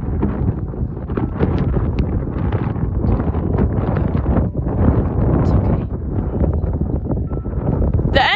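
Heavy wind noise buffeting the microphone, with the thuds of a horse's hooves cantering on sand arena footing under it.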